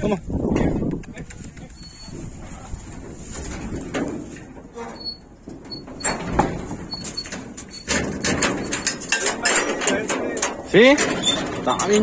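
Knocks and rattling of cattle being moved in a metal stock trailer, with a loud rising bawl near the end from a young calf just separated from its cow.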